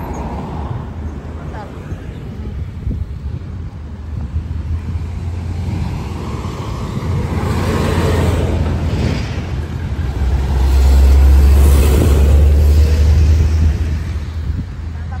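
Road traffic driving past close by. Tyre and engine noise swell through the middle, and a deep engine rumble is loudest in the last few seconds as a pickup truck passes.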